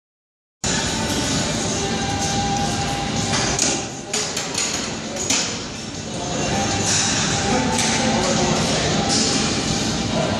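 Busy weight-room ambience: a steady hubbub of voices and equipment noise, with a few sharp metal clanks of weights near the middle.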